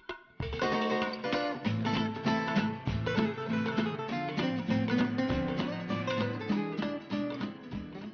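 Background music of plucked strings, a quick, busy run of notes that starts after a short pause about half a second in.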